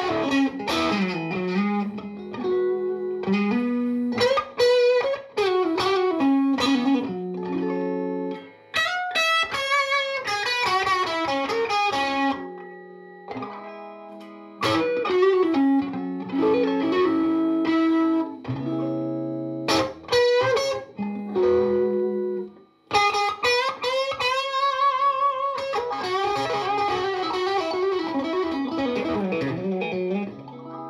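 Fender Masterbuilt 1965-style Stratocaster relic with single-coil pickups, played solo through an amp: picked single-note melodic lines and chords, with vibrato on held notes and a couple of brief pauses.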